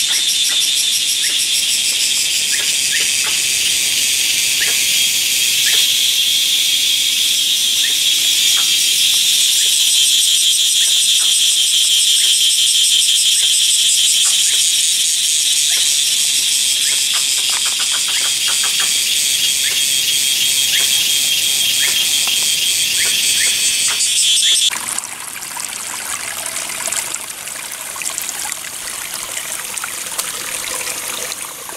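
Cicadas in a loud, high-pitched, rapidly pulsing chorus. About 25 seconds in it breaks off abruptly and gives way to the quieter, steady trickle of a shallow stream running over rocks.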